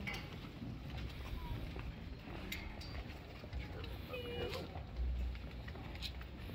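Outdoor ambience: a low rumble of wind on the microphone, faint voices of people and a few scattered clicks.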